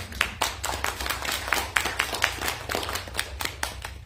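A small audience applauding at the end of a song, individual hand claps distinct, thinning out near the end, over a steady low room hum.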